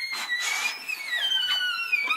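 Violin playing high, gliding notes that slide slowly downward, with a brief scratchy rasp about half a second in.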